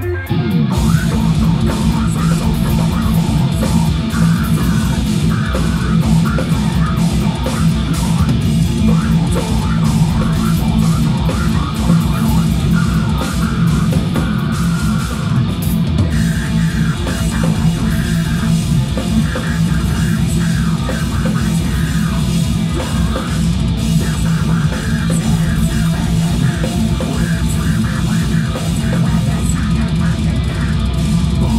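Live death metal band playing at full volume: distorted electric guitars over fast, dense drum kit playing. The full band comes in at the very start, after a quieter guitar-only passage.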